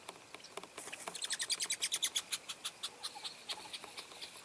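A bird's rapid trill of short sharp notes, about ten a second, starting about a second in, loudest early on and slowing and fading toward the end.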